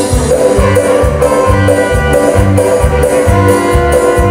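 A live regional Mexican (costeña) band plays a ranchera passage, with bass, guitar, percussion and keyboard. A steady bass beat falls about twice a second, and there is no singing.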